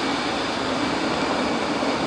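Steady, even rushing noise of air handling or machinery running in the room, with no distinct events.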